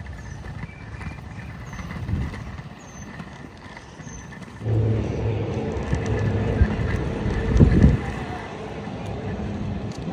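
Outdoor background noise with faint short high chirps. About halfway through, a louder steady low motor hum sets in and keeps going, swelling briefly near the end.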